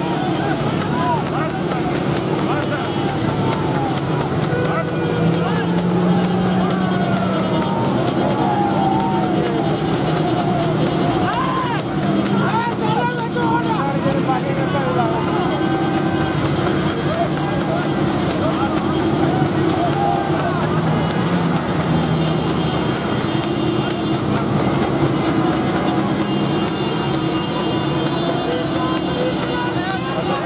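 Motorcycle and car engines running steadily close together, with men's voices shouting and calling over them, their pitch sliding up and down.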